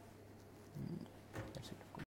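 Quiet room with a steady low electrical hum, and a few soft, brief noises of a person shifting in a chair, about a second in and again near the end.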